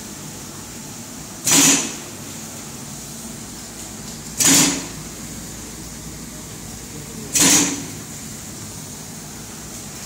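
Foil packaging machine running with its moving device cycling: a short, loud mechanical stroke about every three seconds, three times, over a steady machine hum.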